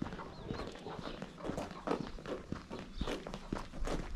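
Footsteps of two people, an adult and a child, walking on a dirt and gravel lane: an uneven run of short crunching steps.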